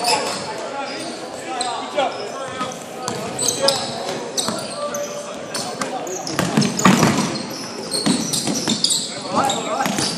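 Sounds of a basketball game in play in an echoing indoor gym: a basketball bouncing on a hardwood court, short high-pitched sneaker squeaks, and indistinct shouts from the players.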